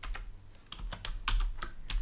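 Computer keyboard being typed on: a quick, uneven run of key clicks as a word is typed out.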